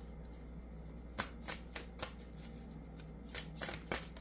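A tarot deck being shuffled by hand, the cards rustling in short strokes: a few spaced ones about a second in, then a quicker cluster near the end.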